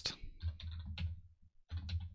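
Typing on a computer keyboard: a few separate keystrokes as a short closing tag is typed.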